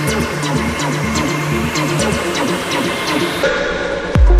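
Tech house DJ mix in a stripped-back section: a looping bassline and ticking hi-hats run without the heavy kick drum. Near the end the top end is suddenly filtered away.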